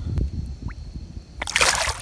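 A small catfish released by hand into the lake, hitting the water with one short splash about a second and a half in.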